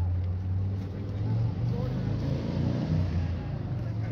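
A car engine idling with a steady low rumble, swelling briefly a little over two seconds in.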